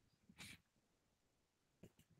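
Near silence: a pause on an online-meeting audio feed, with one faint short sound about half a second in and another just before the end.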